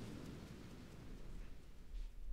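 Faint low rumble with a light hiss and no clear notes, fading slightly: the quiet atmospheric opening of a music video's soundtrack, before the band comes in.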